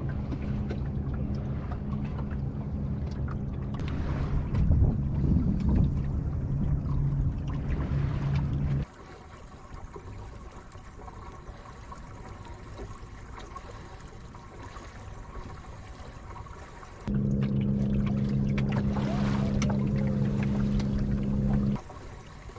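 Sound aboard a small sailing dinghy under way: water moving along the hull and wind on the microphone, with a steady low hum under it. About nine seconds in it drops abruptly to a quieter wash, and the louder hum and noise return about seventeen seconds in.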